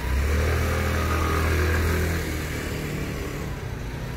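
A motor vehicle's engine passing close by on a city street: a low, steady drone that is loudest for about two seconds and then fades into the traffic noise.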